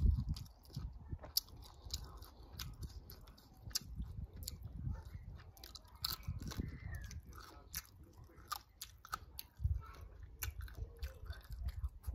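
Close-up chewing and crunching of Thai mango salad with pickled salted crab, full of sharp crisp clicks as the crab shell and crisp vegetables are bitten.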